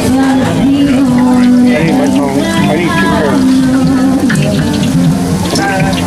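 Hot oil sizzling and crackling in a deep fryer around a giant frying funnel cake, under background music with held low notes and voices.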